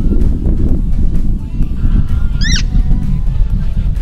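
A single short, high-pitched squeak that rises in pitch, about halfway through, over a steady low rumble.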